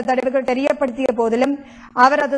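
Speech only: a newsreader reading aloud in Tamil, with a brief pause near the end.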